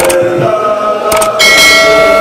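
Men chanting a devotional song together through a microphone, a long held note that swells louder about two-thirds of the way in, with a couple of short clicks.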